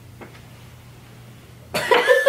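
Quiet room with a faint steady low hum, then near the end a sudden loud, breathy vocal outburst from a young woman, like a burst of laughter or a cough.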